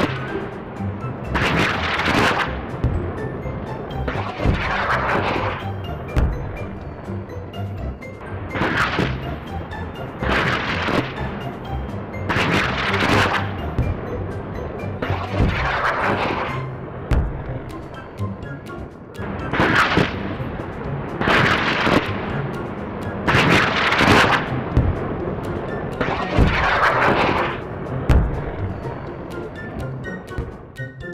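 Cartoon rocket sound effect: a run of rushing roars, each swelling and fading over about a second and coming roughly every two seconds, over background music.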